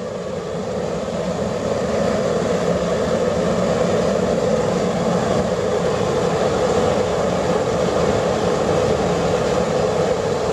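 Waste oil burner built from a fire extinguisher bottle running at full flame, its air blower forcing air through the pipe: a loud, steady rush of burning oil vapour and fan noise that swells a little over the first two seconds.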